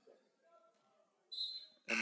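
Quiet gymnasium background during a stoppage in a basketball game, with faint indistinct sounds from the court. About a second and a half in comes a brief high-pitched hiss.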